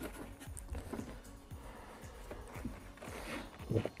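Light clicks and rustles of a plastic jug of pre-mixed windscreen washer fluid being handled before pouring, with faint background music underneath.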